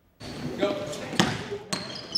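Basketball practice in a large gym, starting a moment in: a basketball bouncing on the hardwood court with two sharp bounces about half a second apart, high squeaks near the end, and a shout of "Go."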